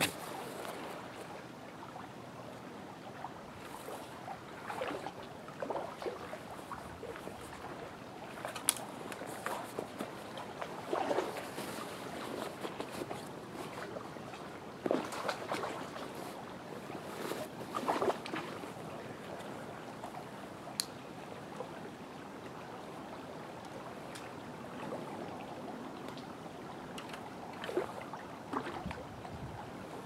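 Steady rush of a flowing trout stream, with short splashes and sloshes every few seconds from wading boots stepping through mud and shallow water at the edge.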